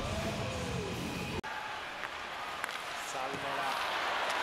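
Music with a heavy bass plays together with a long drawn-out voice, and both cut off abruptly about one and a half seconds in. Steady ice-hockey arena crowd noise follows, with a brief voice and a few faint clicks.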